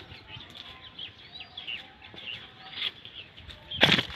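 Small birds chirping repeatedly in short calls, with a brief loud burst of noise just before the end.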